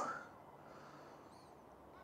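Quiet outdoor ambience after a man's voice trails off, with one faint, high bird chirp about a second in.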